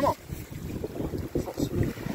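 Wind buffeting the phone's microphone with an uneven low rumble, over the wash of surf on a beach.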